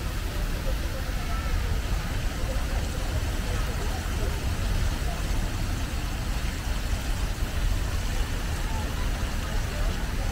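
Steady outdoor city ambience: a low rumble of traffic under an even hiss of water from a fountain's jets splashing into its basin, with scattered voices of passers-by.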